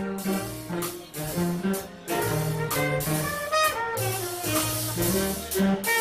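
A live jazz band playing an upbeat tune, saxophone and brass carrying the melody over a walking bass line.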